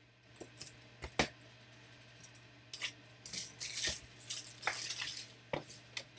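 Trading cards and hard plastic card holders handled on a tabletop: a few sharp clicks and knocks, and a stretch of rustling and sliding through the middle.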